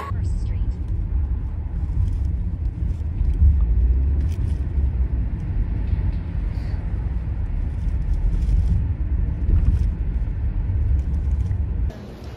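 Steady low rumble of a motor vehicle in motion, heard from inside the cabin; it cuts off suddenly at the end.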